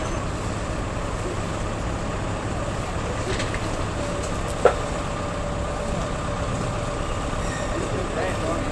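Steady low rumble of vehicle traffic, with a single sharp knock about halfway through.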